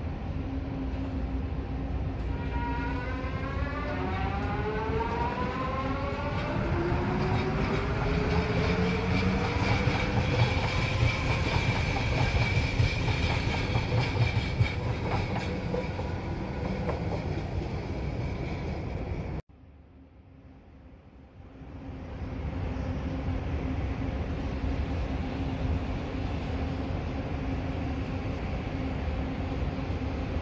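A train pulling away, its motors giving a rising whine of several tones as it gathers speed, over a steady low hum and rumble. About two-thirds of the way through, the sound cuts off abruptly. After a short near-quiet gap, a steady train rumble comes back.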